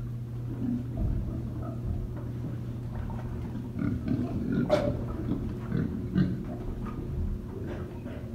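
A group of domestic pigs grunting in short, overlapping low grunts over a steady low hum, with a brief sharp sound about halfway through.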